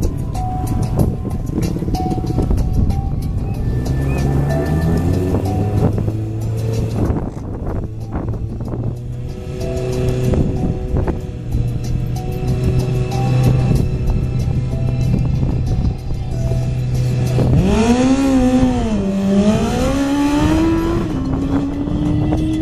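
Kawasaki Ninja ZX-14R's inline-four engine running at the start line, held at a fairly steady speed for most of the time. In the last few seconds it is revved higher, the pitch rising and wavering up and down.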